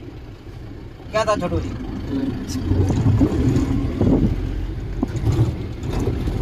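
Inside the cab of a Mahindra pickup driving on a rough dirt track: engine and road rumble, growing louder about two and a half seconds in as the truck jolts along.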